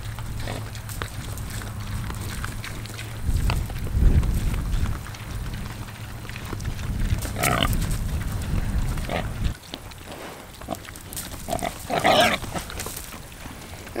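Pigs grunting as they eat feed off the ground, over a low rumble that stops about nine and a half seconds in.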